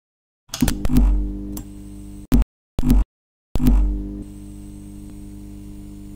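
Neon sign sound effect flickering on: sharp electrical clicks and a buzzing mains hum start about half a second in, cut out and sputter twice, then come back about three and a half seconds in and settle into a steady hum.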